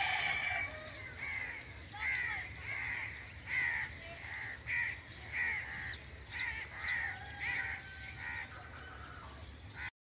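Crows cawing over and over, one or two calls a second, with the calls thinning out near the end, over a steady high-pitched hiss.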